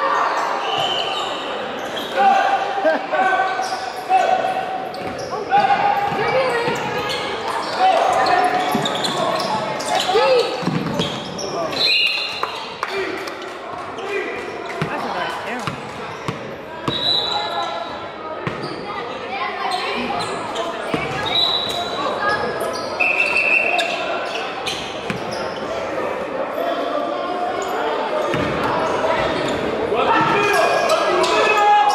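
Basketball bouncing on a hardwood gym floor during a game, with spectators' voices echoing in a large gymnasium.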